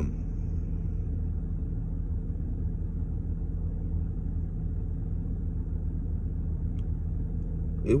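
Steady low rumble of an idling car engine, heard from inside the cabin, with a faint click near the end.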